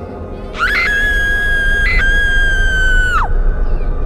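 A woman's long, high scream held on one pitch, starting about half a second in, with a brief break in the middle, and dropping away shortly before the end, over a low rumble.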